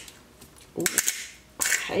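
Metal spoon scraping in a stainless saucepan of apple sauce, with short scrapes and a sharp tap against the pot about a second in.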